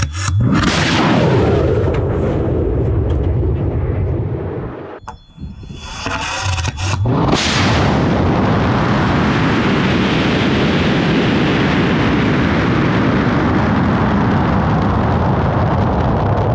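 N-class rocket motor igniting with a sudden blast and a loud roar that falls in pitch as the rocket climbs away from the pad. After a brief drop-out, the roar starts again suddenly, now mixed with rushing wind, and stays steady and loud as the rocket climbs.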